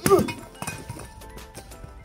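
A hollow Oriental concrete block dropped from overhead lands hard on gravel and rubble right at the start, staying intact, followed by a man's "ooh" and a lighter knock about half a second later. Background music plays throughout.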